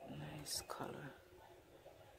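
A woman's soft, near-whispered speech in the first second, with a sharp hissing consonant about half a second in, then quiet.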